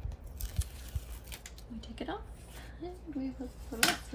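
Light clicks and taps of paper sticker sheets handled on a tabletop, then from about two seconds in a woman's voice humming without words, with one sharp click near the end.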